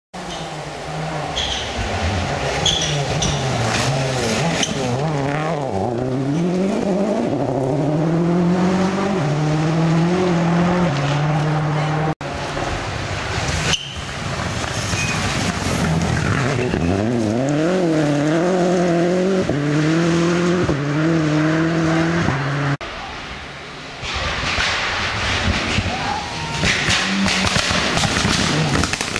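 Rally car engines revving hard and stepping through the gears as the cars approach and pass on a gravel stage, in three separate runs joined by abrupt cuts about 12 and 23 seconds in. In the last run, gravel sprays from the tyres as a car slides through the corner.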